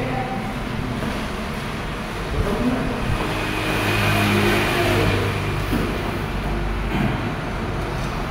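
A motor vehicle's engine passing by, swelling over a couple of seconds in the middle and then fading.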